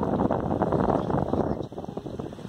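Wind buffeting the microphone: a rough, uneven rushing noise that fills the low and middle range.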